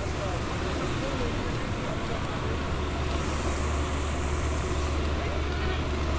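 Diesel engine of a police water cannon truck running close by: a steady low drone that grows stronger about two and a half seconds in, over a general haze of outdoor noise.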